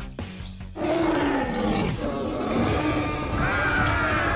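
Cartoon dinosaur roar sound effect over dramatic background music: a loud, rough roar that starts about a second in, falls in pitch, and carries on for a few seconds.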